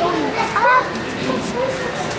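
Children's voices talking and calling out, in short high-pitched bursts, over a steady background murmur.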